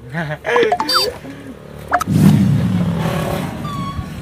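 A man's voice laughing and calling out. About halfway through, a louder, steady rumbling noise takes over.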